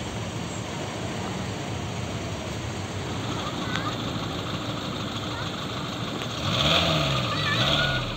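Street noise of a stopped traffic queue: car engines idling, with people's voices in the background. Near the end a louder low sound rises and falls in pitch twice.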